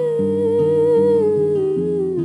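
A woman humming a long held note that steps down in pitch over the second half, accompanied by steady strumming on an Epiphone acoustic guitar.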